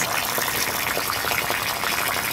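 Water running steadily out of a siphon hose draining the vinyl water lens: an even rushing sound with no breaks.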